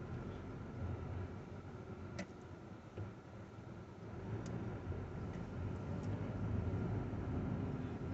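Car running, heard from inside the cabin as it pulls out and drives off: a low engine and road rumble that grows louder from about halfway through as the car picks up speed, with a few faint clicks.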